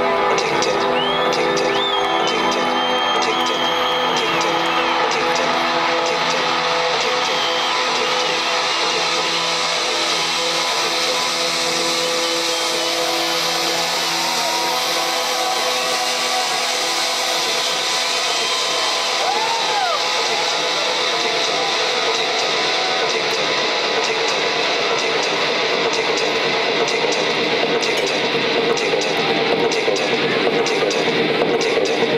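Electronic dance music from a DJ set played over a festival sound system, heard from among the crowd, with a few whoops rising and falling above it.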